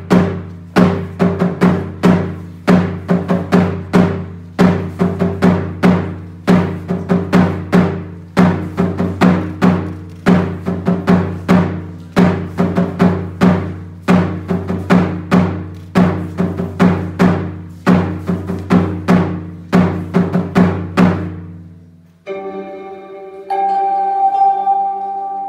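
Dance music of hand-drum strikes in a steady, repeating pattern over a low sustained drone. About 21 seconds in, the drumming stops and sustained ringing, bell-like tones take over.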